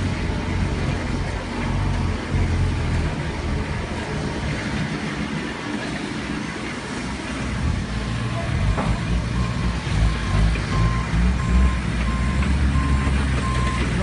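A heavy vehicle's engine running, with its reversing alarm starting to beep at a steady even pace about two-thirds of the way in.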